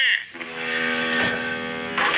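A man's shout cuts off, then a steady steam-whistle tone sounds over a hiss of escaping steam, a cartoonish sound effect.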